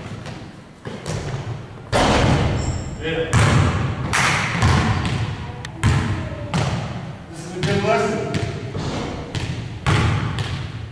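Basketballs bouncing and thudding on a hardwood gym floor, repeated irregular thuds echoing in the large hall.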